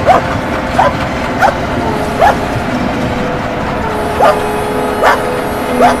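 A dog barking repeatedly, about seven short sharp barks with a pause near the middle, over the steady rumble of a passing train.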